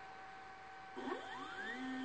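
Stepper motor driving the X-axis of a CNC-converted Proxxon MF70 mini mill, starting a jog move about a second in with a whine that rises smoothly in pitch as it accelerates. Before that only a faint steady hum.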